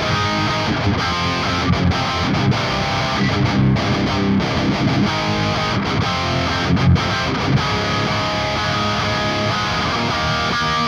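Valiant Jupiter electric guitar through a high-gain amp playing a heavily distorted metalcore breakdown of low chugs, layered with a second guitar part a semitone up for dissonance. The playing is dense and steady, with a few harder hits, the strongest about two-thirds of the way in.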